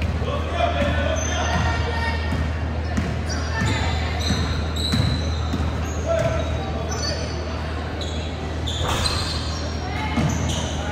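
A basketball being dribbled on a hardwood gym floor, with sneakers squeaking in short high chirps and players' and spectators' voices calling out, all echoing in a large gym over a steady low hum.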